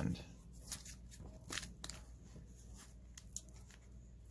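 Faint handling sounds: light rustling of paper and a few soft, scattered clicks as baseball cards and a paper wax pack are handled.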